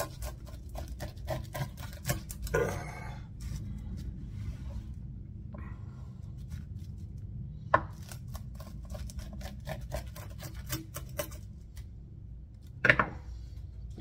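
Rolling pizza-cutter wheel slicing through a crispy ultra-thin crust on a wooden cutting board: runs of quick crackling clicks as the crust breaks under the wheel. There is a sharper click about eight seconds in and a louder knock near the end.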